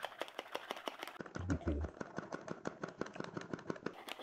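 Hand-pumped foam-maker cup for facial cleanser being plunged rapidly up and down, giving a quick, even run of wet clicks about nine a second as it whips water and gel cleanser into foam.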